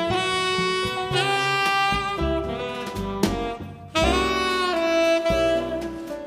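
Tenor saxophone playing a jazz melody in long held notes, with a short breath pause a little past halfway before the next phrase, over plucked upright bass.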